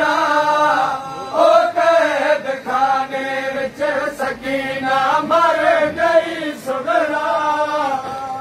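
Men's voices chanting a noha, a Shia mourning lament, in short repeated phrases.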